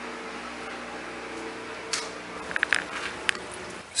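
Washer and dryer running: a steady machine hum, with a few light clicks in the second half.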